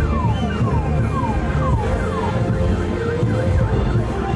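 Festival band music with a steady low beat and a repeated falling glide in the melody, about two a second, giving way to short dipping notes near the end.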